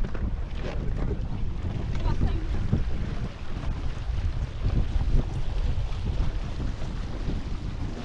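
Wind buffeting the onboard camera's microphone aboard an F18 racing catamaran under sail: a steady low rumble with the wash of water along the hulls.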